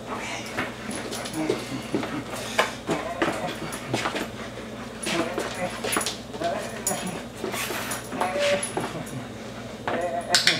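A dog at play with its handler on a laminate floor: scuffling steps and claw clicks, with a few short whines from the dog.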